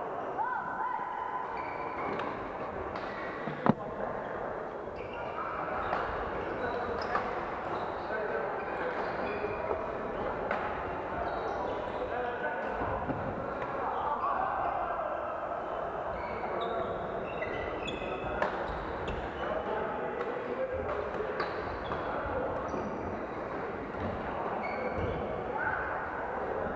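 Badminton play in a reverberant hall: irregular racket strikes on shuttlecocks, short squeaks of court shoes on the wooden floor, and players' voices. A sharp crack nearly four seconds in is the loudest event.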